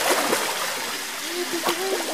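Water splashing and churning as a polar bear swims and turns in a pool, with sharper splashes in the first half second.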